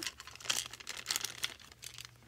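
Small clear plastic bag crinkling as it is handled and pulled open, a run of irregular crackles that die down after about a second and a half.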